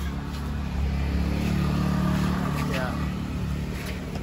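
A motor vehicle passing on the road, its engine drone swelling to a peak midway and then fading.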